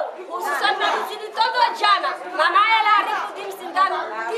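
Women talking, several voices over one another in a room.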